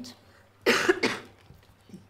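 A person coughing once, a short harsh burst about two-thirds of a second in.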